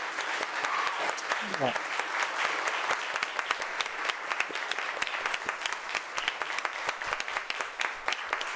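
An audience applauding, many hands clapping steadily, with a brief spoken "yeah" partway through.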